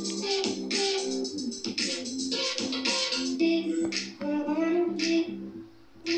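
Background instrumental music with a steady beat and short repeated notes, dipping in level just before the end.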